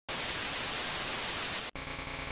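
A steady burst of white-noise static, an even hiss lasting about a second and a half that cuts off sharply; quiet music begins just after it near the end.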